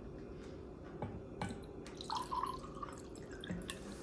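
Water poured from a bottle into a ceramic mug: a faint trickle and dripping, with a few light knocks.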